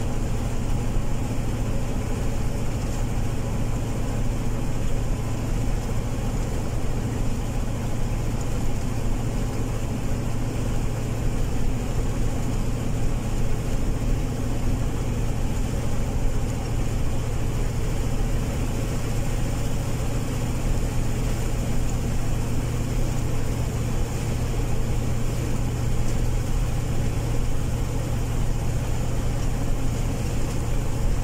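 Car driving at road speed: a steady engine hum under even tyre and road noise.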